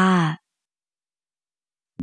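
A narrator's voice holding the final drawn-out syllable of a spoken word, cutting off about half a second in, then dead silence.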